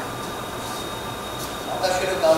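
Steady rumbling noise with a faint high whine, and a man's voice begins near the end.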